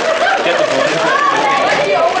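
Overlapping chatter of many voices talking at once, with no single clear speaker.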